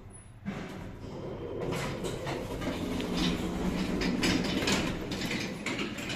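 Passenger lift at a landing: a short high beep at the start, a clunk about half a second in, then the automatic car and landing doors sliding open with clicks and knocks from the door mechanism, mixed with footsteps on hard tile as the noise of the hall grows louder.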